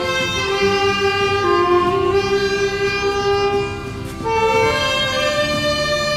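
Saxophone playing a slow melody of long held notes, with a short drop in level about four seconds in before the next note.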